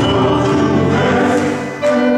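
Men's choir singing a gospel hymn in long held notes, easing off briefly near the end before the next phrase begins.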